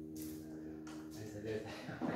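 A strummed chord on an acoustic guitar ringing out and slowly fading. A man's voice comes in over it about halfway through.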